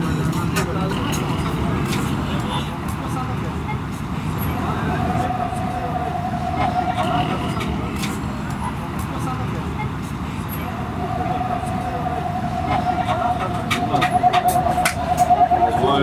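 Busy street ambience: traffic and indistinct voices in the background. A sustained, warbling high tone sounds twice, first from about a quarter of the way in for three seconds and then through the last third.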